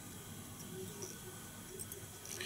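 Faint handling sounds over quiet room tone: tying thread being wrapped over a strip of foam on a fly-tying hook, with a tiny tick about a second in.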